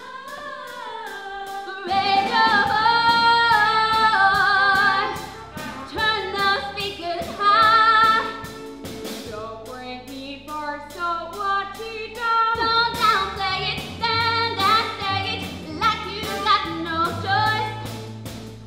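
Girls' voices singing a musical-theatre number, with a live pit band accompanying underneath. A long, wavering held note comes about two seconds in.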